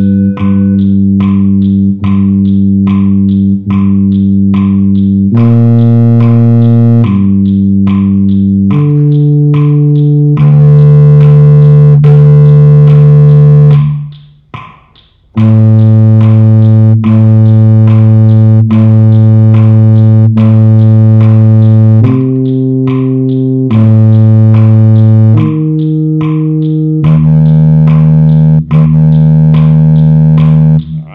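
Low brass instrument playing single sustained notes one after another, each held about two beats, the pitch changing from note to note, with a short break about halfway through. Faint steady metronome clicks tick under the notes.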